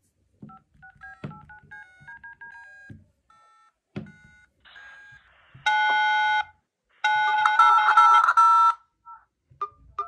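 Touch-tone (DTMF) keypad beeps as digits are tapped on a smartphone's in-call keypad, each a short two-note beep with a soft fingertip tap on the screen. About halfway through and again near the end come louder, harsher runs of quickly repeated keypad tones.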